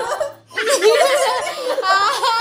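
Women laughing, broken by a short pause about half a second in.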